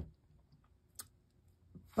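A single sharp click about a second in, with a fainter one near the end, as tarot cards are handled on a cloth-covered table.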